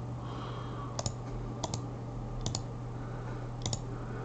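Computer mouse buttons clicking: four quick pairs of clicks, spaced about a second apart, over a steady low hum.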